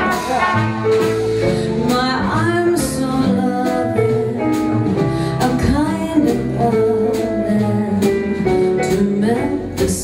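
A live jazz combo playing a slow ballad: piano and upright bass under held saxophone and trumpet notes, with the drummer keeping time on the cymbals.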